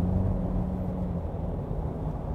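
Steady low road and engine rumble inside the cabin of a Ford Ranger Bi-Turbo pickup cruising at highway speed. A faint steady hum fades out about a second in.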